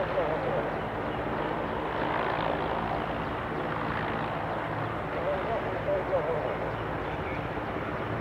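Mil Mi-8-family military helicopter on the ground, its twin turboshaft engines and main rotor running in a steady drone as it taxis slowly.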